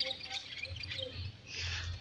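Faint bird chirps in the background, short high notes that thin out over the first second, with a soft rushing noise near the end.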